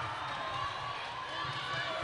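Indoor netball court ambience: a low murmur of spectators' and players' voices, with players' footsteps on the wooden court floor.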